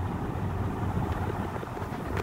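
Steady low background rumble with a faint hiss, with no distinct events.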